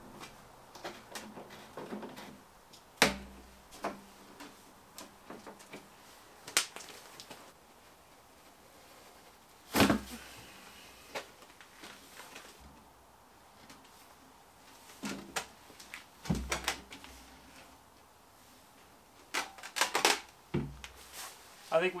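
Handling of plastic Nissan R32 GTR fuel tanks: scattered light clicks and knocks as a cap and the filler neck are worked off, with three dull thumps spread through and a cluster of clicks near the end.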